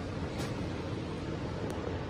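Steady low rumble and hiss of background noise with no distinct sound standing out.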